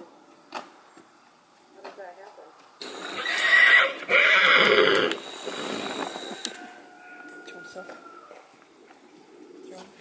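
A horse neighs loudly about three seconds in: one rough call of about two seconds with a short break in the middle.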